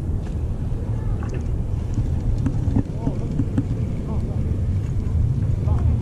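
Wind rumbling steadily on the camera microphone, with faint voices of people in the background.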